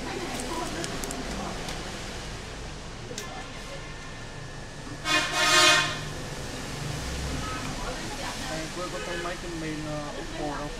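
A horn honks once, loud, for about a second, about five seconds in. Faint background voices and a few light handling clicks run under it.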